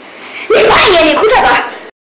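A woman's loud, emotional outburst of speech in Burmese, strained and wavering in pitch, which stops abruptly into dead silence just before the end.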